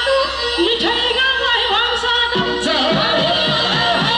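A woman and a man singing a Nepali folk song through microphones and a PA over musical accompaniment. A low, steady rhythmic beat comes in about halfway through.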